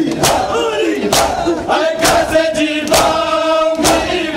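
Matam: a crowd of men beating their bare chests with their hands in unison, a sharp slap about once a second. Under the slaps, a crowd of male voices chants in mourning, holding long notes.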